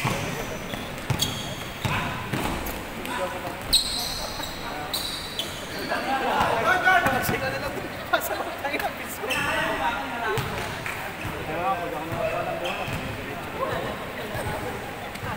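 A basketball bouncing and sneakers squeaking on a wooden court during live play, with sharp bounces and short high squeaks scattered throughout.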